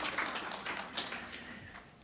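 Light, scattered applause from an audience, fading out.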